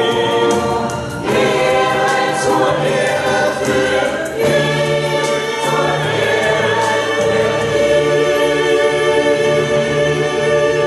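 Mixed choir of men's and women's voices singing in harmony, with brief breaths between phrases about one and four seconds in and the low voices coming in stronger soon after.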